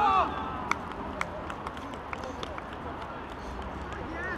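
A player's short, loud shout right at the start, then the pitch-side sound of a football match: a steady low rumble with scattered sharp clicks.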